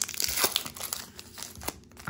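Foil Pokémon booster pack wrapper being torn open by hand: irregular crinkling and tearing of the foil, loudest at the start and again about half a second in.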